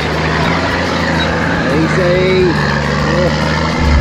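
Four-wheel-drive wagon's engine working steadily under load as it tows a boat trailer through soft sand, a constant low drone. Just before the end it turns louder and deeper, heard from inside the cabin.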